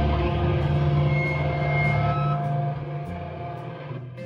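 Electric guitars and bass ringing out a held, droning chord through loud amps, with a brief high tone over it, the sound dying down about three seconds in.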